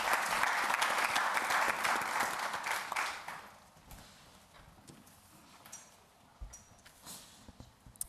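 Audience applauding, dying away about three and a half seconds in. Then only a few faint knocks and a low thump.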